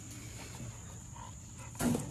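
Quiet outdoor background with a steady high-pitched insect drone, and a short noisy sound near the end.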